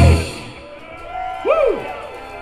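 A live rock band's closing hit on drums and guitars, cutting off within half a second, then a small bar crowd cheering, with one shout that rises and falls in pitch about a second and a half in.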